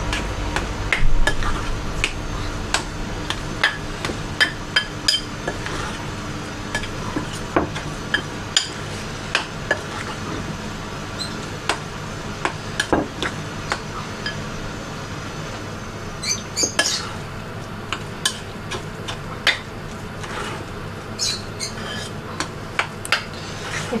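Croquette mixture of mashed potato, salt cod, egg and parsley being mixed in a glass bowl, with irregular small clicks and taps against the glass, about one or two a second, over a steady low hum.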